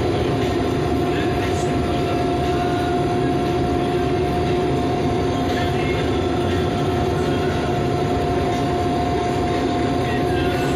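International Harvester 1420 combine harvesting soybeans, heard from inside its cab: a steady mechanical drone of engine and threshing, with a high whine held on top.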